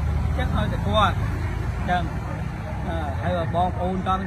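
A man talking in Khmer over a low, steady engine rumble from a nearby vehicle; the rumble is strongest in the first half second, then eases.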